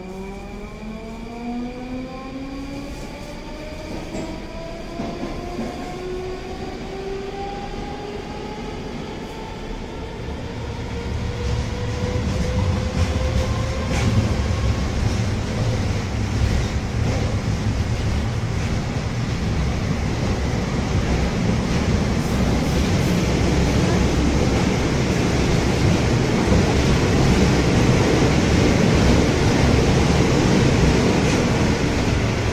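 Moscow Metro 'Rusich' train accelerating away from a station, heard from inside the car: its traction motor whine rises in pitch for about the first fifteen seconds and levels off. The rumble of wheels on rail then grows louder and steadier as the train reaches running speed.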